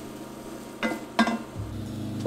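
Wooden spoon stirring sautéed vegetables and tomato paste frying in a Dutch oven, with a soft sizzle and two short scrapes of the spoon about a second in.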